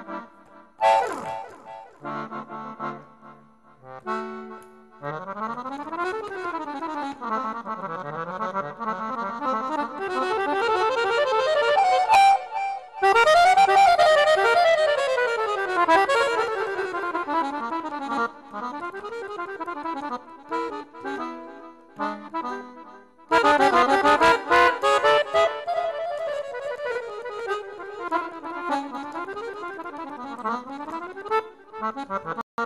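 Piano accordion played in Romanian lăutar style: fast virtuoso runs sweeping up and down the keyboard, in phrases broken by brief pauses twice.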